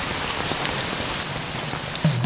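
Steady rain falling, an even hiss with scattered drop ticks.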